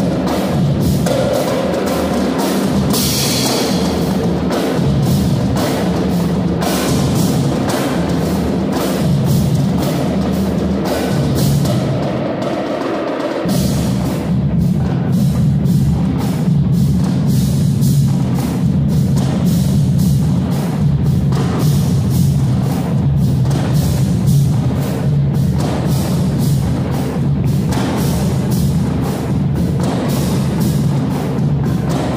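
School percussion band playing a driving rhythm on marching snare drums, bass drums, tall conical hand drums and cymbals, with a cymbal crash about three seconds in. After a brief dip just before halfway, the low drums come in heavier.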